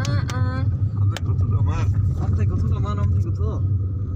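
Steady low rumble of a car's engine and road noise inside the moving car's cabin, under a person's voice.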